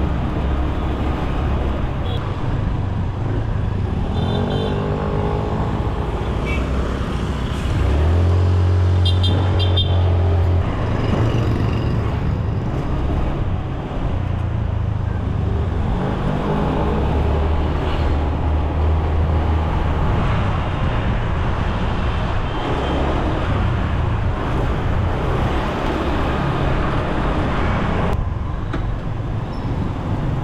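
Motor scooter riding through street traffic, its engine running with rising and falling pitch as it speeds up and slows. It is loudest about eight to ten seconds in.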